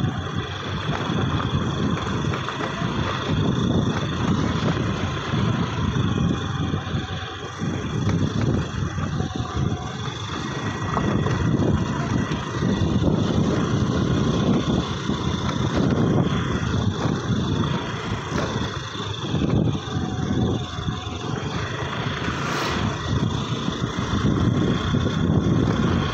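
Motor scooter running while being ridden, with its engine noise mixed with wind buffeting the microphone in a steady, fluctuating rumble.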